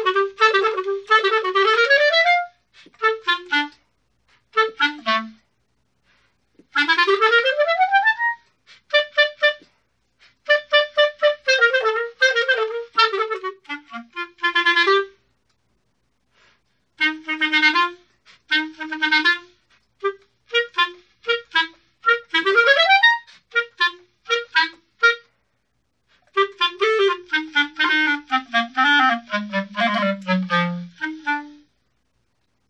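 Solo clarinet playing unaccompanied: phrases of quick runs and detached notes separated by brief rests, with two fast upward runs, one about seven seconds in and one about twenty-two seconds in, and a descent into the low register near the end.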